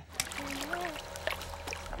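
Water splashing and trickling as a bucket is emptied into a gold pan in a shallow creek, with many small clicks throughout.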